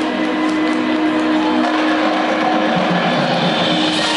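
Marching band holding a loud sustained chord that thickens into a dense, noisy swell over the second half.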